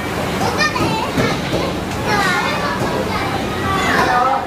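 Young children's voices calling out and chattering, with the general noise of children playing.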